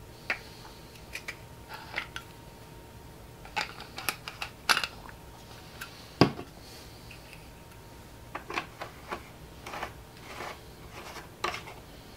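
Scattered light clicks and knocks of a plastic ink bottle and the ink-tank caps being handled, with one louder thud about six seconds in as the emptied bottle is set down on the desk.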